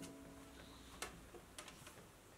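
Near silence as the last of a ukulele chord dies away, with a few faint clicks about halfway through and near the end.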